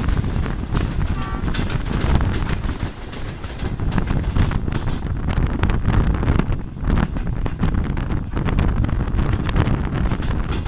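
Diesel-hauled passenger train running along the track, heard from a coach window: a steady heavy rumble of the coaches with rapid clicks, and wind buffeting the microphone.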